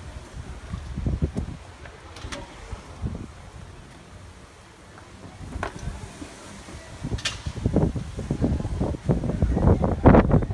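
Wind buffeting a phone's microphone in uneven gusts, with a few sharp clicks; the rumble grows louder near the end.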